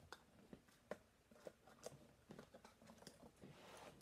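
Near silence with faint, irregular light clicks and taps of craft supplies being handled and moved about during a search for a small box.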